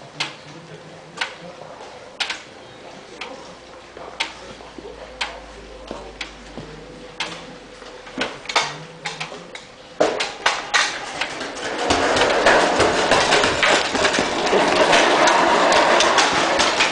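Skeleton sled rocked back and forth on the ice at the start, clicking about once a second. About ten seconds in it gets suddenly louder with clattering runners and running feet as the push-off begins, and from about two seconds later onlookers' voices build up loudly.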